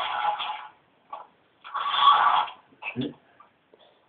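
Small electric motor of a remote-controlled toy car whirring in two short bursts as the car drives back and forth, played back through computer speakers.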